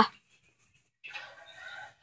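A child's high-pitched shout cut off right at the start, then, after a short quiet, a faint breathy noise lasting about a second near the end.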